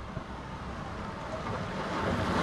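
Orbea Ordu time-trial bike approaching on a wooden velodrome track: a steady rush of tyres and air that grows louder as the rider nears.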